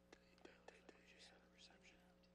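Near silence: faint room hum with a few soft clicks and faint whispering.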